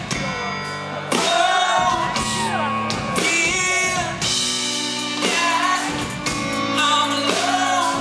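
Live pop-rock band playing with a male lead vocal singing held, gliding melody lines into a microphone over keyboards, guitar and drums.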